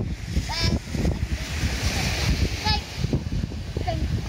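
Small waves breaking and washing up a sand and pebble beach, with wind buffeting the microphone as a steady low rumble.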